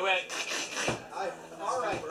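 Indistinct voices talking in a small room, with two sharp knocks about a second apart.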